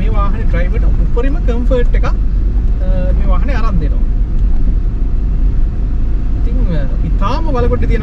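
A man talking in short bursts over the steady low rumble of a Mitsubishi Pajero SUV on the move.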